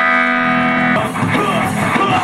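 Live rock band: a held electric guitar chord rings steadily, then about a second in the full band comes in with drums and busier guitar playing.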